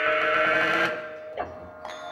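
Experimental performance music: a loud, wavering, bleat-like sustained tone with many overtones for about the first second, then two sharp knocks.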